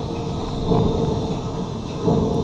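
Dark-ride ambience: a steady low rumble with a constant hum, swelling briefly a little under a second in.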